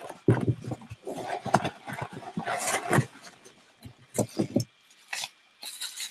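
Irregular rustling, crinkling and knocks of bubble-wrap packaging and a glass beer bottle being handled and lifted out of a cardboard shipping box.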